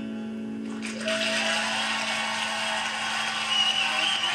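The final acoustic guitar chord rings out, then about a second in studio audience applause breaks out and carries on steadily, heard through a TV speaker.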